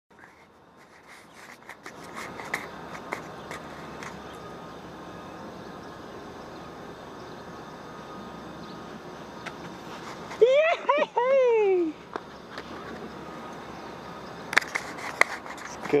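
Steady outdoor background noise with scattered clicks and knocks from a body-worn camera shifting as its wearer moves. A short rising-and-falling vocal exclamation comes a little past the middle, and a cluster of knocks near the end.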